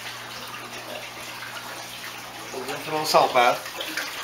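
Steady running-water noise over a low constant hum. A brief voice sounds about three seconds in.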